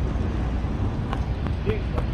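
Wind rumbling steadily on the microphone outdoors, with a few faint clicks.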